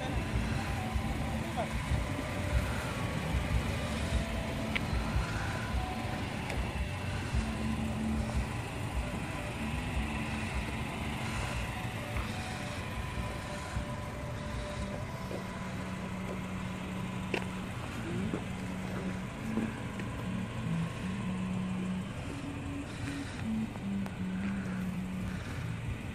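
Steady low hum of parked cars idling, with faint music playing and indistinct voices.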